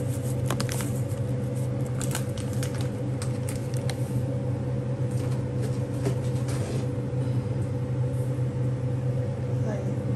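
A steady low mechanical hum with a fainter higher tone runs throughout, like a kitchen fan. Over it come scattered light clicks and taps, many in the first few seconds and fewer later, as seasonings are added to a pan of morning glory and crispy pork.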